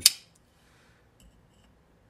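A single sharp metallic click as a titanium folding knife is handled against the countertop, followed by near silence with a couple of faint light ticks about a second in.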